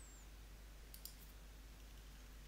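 Near silence with two faint computer-mouse clicks in quick succession about a second in.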